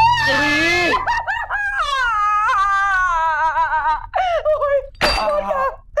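A woman shrieks in dismay, then lets out a string of high, wavering wordless wails and whimpers. A short sharp noise comes about five seconds in.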